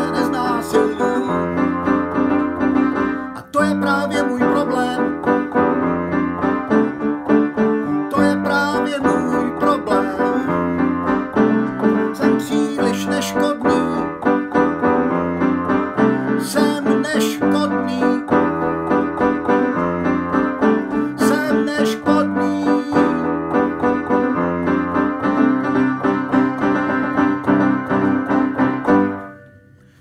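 Piano played with steady, rhythmic chords, the closing passage of a song. The music fades out and stops near the end.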